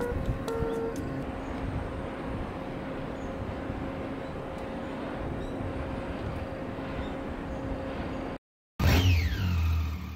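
Steady rushing of wind with a large wind turbine turning, a faint low hum heard in the first couple of seconds. Near the end it cuts off suddenly and a short sound effect follows: falling whistling tones over a low rumble.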